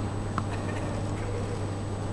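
A tennis ball bounced once on the indoor court surface about half a second in, part of a player's bounce-before-serve routine, over a steady arena hum.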